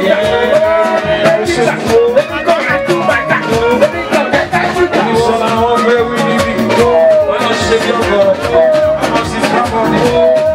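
A live band playing Nigerian party music: a singer's melody over dense, steady percussion, with no break.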